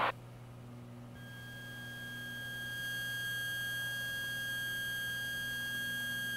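A steady, high-pitched electronic tone with faint overtones comes in about a second in over a low steady hum. It grows slowly louder for the first few seconds and then holds level, heard through the aircraft's headset and radio audio feed rather than the open cabin.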